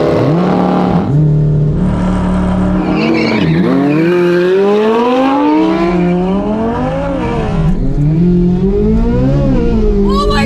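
Two supercars at full throttle from a drag-race launch: the 2023 Corvette Z06's 5.5-litre flat-plane-crank V8 and the Lamborghini Huracán Evo's V10. The engine note climbs hard, drops back at each upshift and climbs again, several times over.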